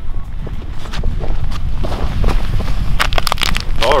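Wind buffeting the camera microphone, a steady low rumble, with a few sharp clicks around three seconds in.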